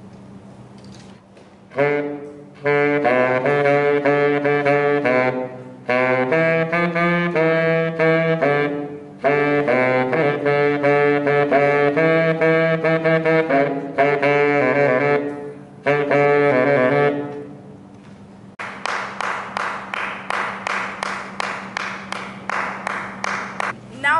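Solo saxophone playing a melody in phrases with short breaths between them. Near the end the saxophone gives way to a steadily pulsing beat of pop music.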